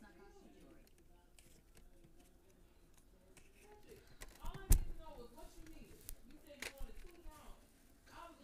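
Handling noise from a plastic toy water blaster being gripped and worked by hand: one sharp knock about halfway through and a couple of lighter clicks after it, under faint low talking.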